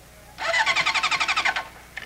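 Honda motorcycle's electric starter cranking the engine, a fast pulsing whirr that starts about half a second in and stops after about a second.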